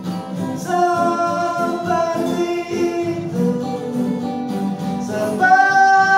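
A man singing long held notes to two acoustic guitars, with a louder held note starting near the end.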